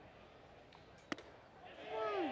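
One sharp pop of a pitched baseball smacking into the catcher's mitt for strike three, about a second in, over faint ballpark crowd murmur.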